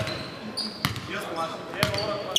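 A basketball being dribbled on a wooden gym floor: three bounces about a second apart.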